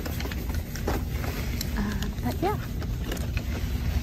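Steady low background rumble in a store, with a few light clicks and a brief rising voiced sound a little past the middle.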